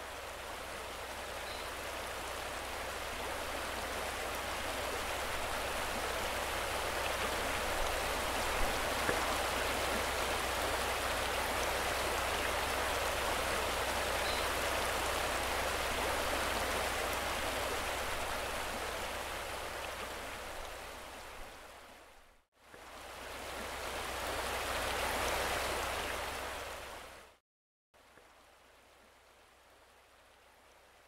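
Rushing water of a shallow braided river, a steady hiss that swells slowly and fades away. It drops out briefly, swells again, and cuts off abruptly near the end, leaving only a faint low hum.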